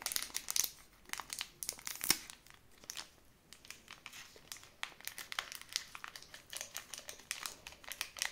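A small supplement stick sachet being crinkled and torn open by hand, a run of irregular crackles with a sharper one about two seconds in.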